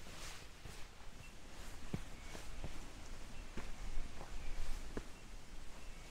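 A hiker's footsteps on a sandy, stony walking track: several uneven steps, roughly half a second to a second apart.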